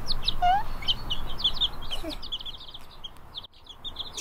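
Young frizzled Paduan chicks peeping: a rapid run of short, high peeps, with one lower rising call about half a second in. The peeping thins out and breaks off shortly before the end.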